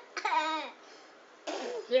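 A toddler laughing in two high-pitched bursts: a short one with falling pitch, then another that starts about a second and a half in.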